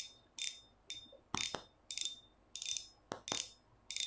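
The front drag knob of a Kenzi Ferrari spinning reel clicking as it is turned: a regular series of sharp clicks, two to three a second. The clicks are fairly loud and clear.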